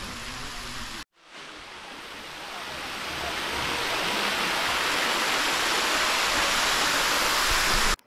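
A chorus of cicadas, a dense, even high hiss like white noise. It swells steadily for several seconds after a brief dropout about a second in, then cuts off abruptly near the end.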